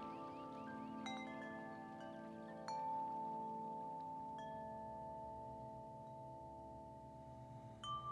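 Sparse chime-like struck notes in a film's music score. A few single notes start sharply, the strongest just under three seconds in, and each rings on and slowly fades. A new note sounds at the very end.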